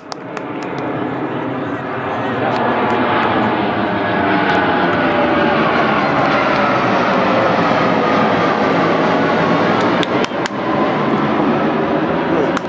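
Jet aircraft passing overhead: a loud, steady rush of engine noise that builds over the first few seconds, with a whine slowly falling in pitch.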